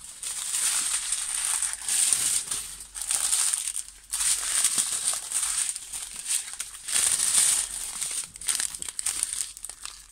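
Plastic packaging crinkling steadily as it is handled, in long stretches broken by a few brief lulls.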